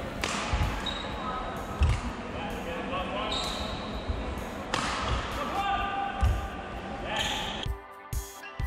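Live badminton court sound from a multi-shuttle drill: heavy footwork thumps from lunges and push-offs every second or so, short shoe squeaks on the court floor, and racket strikes on shuttles. Music starts near the end.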